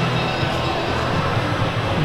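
Steady ambient noise of a large indoor arena, an even wash of sound with a few faint held tones, likely music played in the hall.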